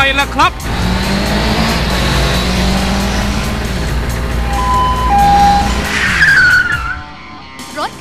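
Cartoon car-chase sound effect: a car engine running hard at speed, with two brief steady beeps about five seconds in and a falling tyre screech about six seconds in.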